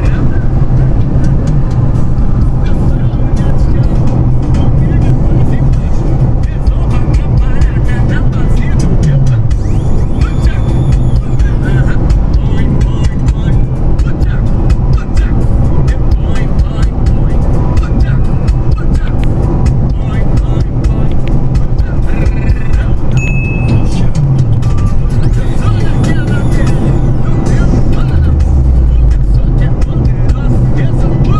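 Ford Focus 2.0 on the move, with steady engine and road noise heard from inside the cabin and music playing over it.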